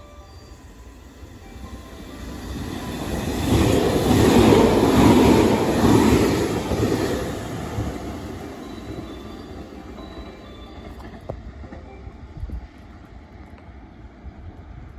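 JR Shikoku 8000 series 'Shiokaze' limited express electric train running through the station without stopping. It grows louder as it nears, is loudest about four to six seconds in as it passes, then fades as it moves away.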